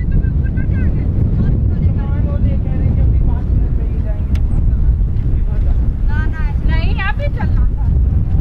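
Wind buffeting the camera microphone, a loud low rumble throughout, with people's voices heard faintly behind it, clearest about six to seven and a half seconds in.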